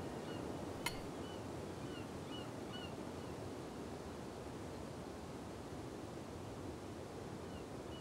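Faint background ambience: a steady hiss with a few small birds chirping during the first three seconds. A single light click, like a utensil touching a dish, about a second in.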